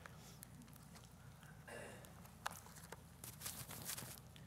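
Faint rustle and a few soft clicks of Bible pages being turned, over a low steady hum.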